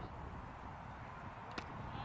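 Faint outdoor field ambience with a single sharp knock about one and a half seconds in.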